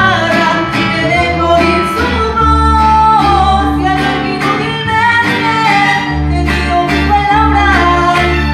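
Live mariachi band playing: a woman singing with violins and strummed guitars under a steady bass beat.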